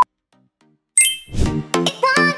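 A countdown timer's short, single-pitched electronic beep right at the start, the last of a series a second apart, marking the start of a workout interval. About a second in, a bright chime rings out and upbeat background music comes in.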